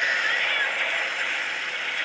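Oshu! Banchou 3 pachislot machine's effect sounds during its battle presentation: a steady noisy rush with a few brief gliding tones, over the din of the slot hall.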